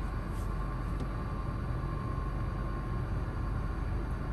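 Steady hum and hiss of car-cabin background noise, with a faint steady tone above it, typical of a parked car's ventilation fan and running engine.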